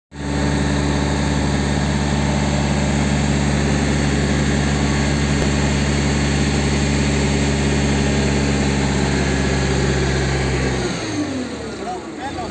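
Crane engine running steadily at raised revs while holding a suspended weighbridge platform section, then its revs dropping away about eleven seconds in as the load is set down.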